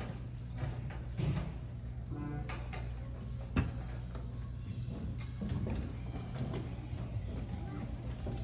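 Children getting up and shuffling into place, with scattered low voices and one sharp knock about three and a half seconds in, over a steady low hum.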